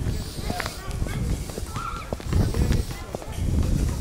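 Footsteps on a paved road, with low rumbling wind and handling noise on the camera microphone as the person filming walks. Faint voices are in the background.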